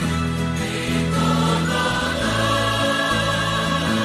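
Choir singing a hymn in long, held notes.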